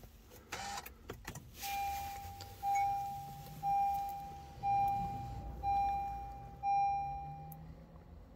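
Car dashboard warning chime sounding six times, about once a second, each a single clear tone that fades, after a few clicks as the push-button start switches the engine off with the ignition left on.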